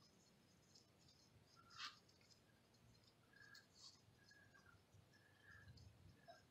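Near silence: a hand spreading wood ash over a flat stone slab, with one faint brief scrape about two seconds in and a few faint short high tones later on.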